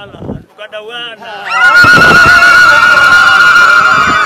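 Loud, high-pitched ululation from a crowd, starting about one and a half seconds in and held on one trembling pitch. A man's chanting voice is heard briefly before it.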